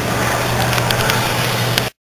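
Muffled rustling and clicks of a handheld camera being moved about, over a steady low hum, cutting off suddenly near the end.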